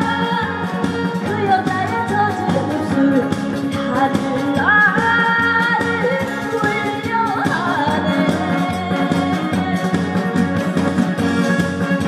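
A woman singing a song into a handheld microphone over loud amplified band accompaniment with a steady beat. Near the middle she slides up into a long held note.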